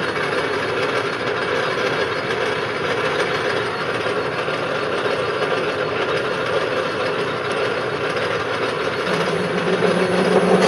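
Metal lathe running with a high-speed steel bit taking a light cut on an aluminium pulley turned between centers, a steady machining noise; the cut chatters, leaving a poor finish. A lower steady hum joins near the end.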